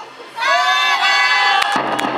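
An ōendan cheer-squad performer's long, drawn-out shouted call, rising slightly in pitch, followed near the end by a noisy burst of crowd sound.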